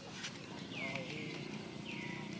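A high call falling in pitch and then levelling off, heard twice about a second and a quarter apart, over a steady low background murmur.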